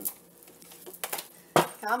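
Tarot cards being shuffled by hand: a few light clicks and taps, then one sharp, loud click about a second and a half in.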